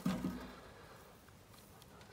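Near silence: quiet background, with only a faint brief sound in the first half second.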